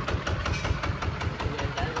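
Single-cylinder horizontal diesel engine idling with a steady, even pulse.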